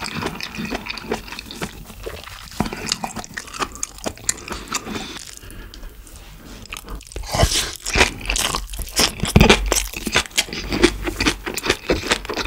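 Close-miked chewing of a mouthful of yeolmu-bibimbap, with many small crunches from the raw vegetables and bean sprouts. Partway through, a wooden spoon scoops another mouthful from the bowl, and the chewing resumes denser and louder.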